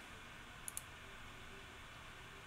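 Two quick computer mouse clicks, about a tenth of a second apart, a little under a second in, over faint room tone.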